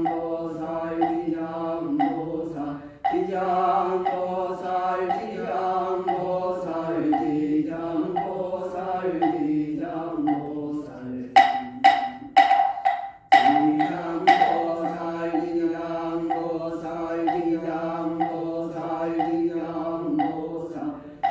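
Buddhist monk chanting a liturgy in a steady, near-monotone voice, kept in time by regular strikes of a moktak (wooden fish). About eleven seconds in, the chant breaks for a few sharp, ringing strikes, then goes on.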